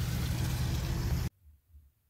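Van engine running, heard from inside the cab as a steady low hum under a wash of noise; it cuts off suddenly a little over a second in.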